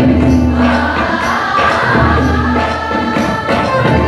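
A large choir singing a Rajasthani folk song, with a low bass line and light percussion underneath.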